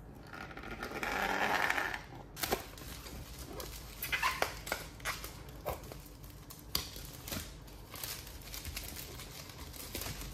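Utility knife slitting the clear plastic shrink-wrap on a canvas in a rasping stroke lasting about two seconds. Then the film crinkles and crackles in scattered sharp bursts as it is peeled off by hand.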